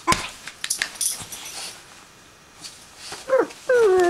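Greater Swiss Mountain Dog puppy playing on a bed: a thump and rustling of bedding at first, then two whiny yelps falling in pitch near the end, the second longer.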